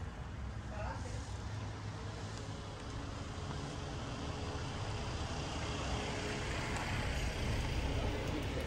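Steady outdoor background noise made up mostly of a low rumble, with faint voices in the background.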